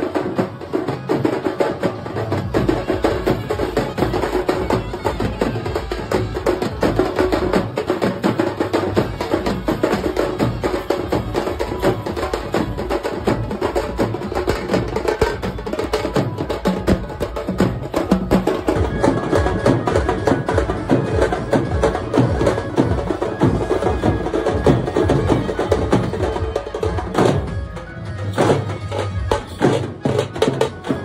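Loud live folk drumming by a procession drum band, playing a fast, dense, driving rhythm with a brief lull near the end.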